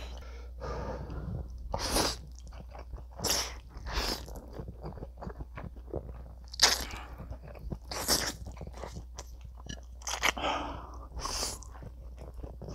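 Close-miked eating of thick stir-fried instant noodles (Buldak bokkeum myeon). There are several short, loud slurps at irregular intervals, with wet chewing between them.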